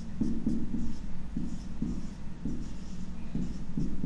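Marker pen writing on a whiteboard: a run of short, separate strokes as capital letters are drawn one after another.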